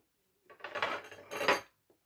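Cutlery clinking and scraping against glass dishes on the table for about a second, loudest near the end of that stretch, followed by a short click.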